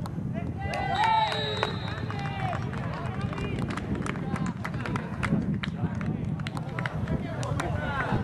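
Football players shouting and yelling as a goal goes in, loudest in the first two seconds, with scattered sharp knocks and claps over a steady low rumble of outdoor pitch noise.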